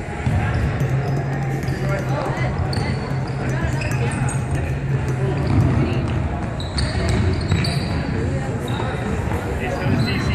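Sports shoes squeaking and feet pounding on a wooden sports-hall floor as players sprint and cut, with many short high squeaks scattered throughout. Indistinct player shouts echo through the large hall.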